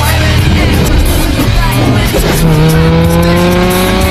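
Car engines running hard in a film race scene, mixed with background music; about halfway through, one engine revs up in a long steady rise in pitch.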